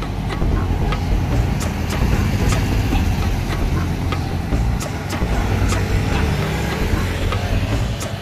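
A Higer coach bus's diesel engine rumbling low as the bus drives past and pulls away, over street traffic.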